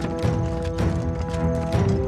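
Background music of held, sustained notes over a fast, clattering, hoof-like beat.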